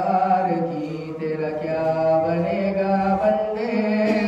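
A man's solo voice chanting a religious recitation melodically into a microphone, holding long notes that step from one pitch to the next.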